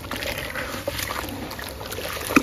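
Hands sloshing and swishing through a tub of gritty sand-cement water, with small splashes and the crackle of wet grit.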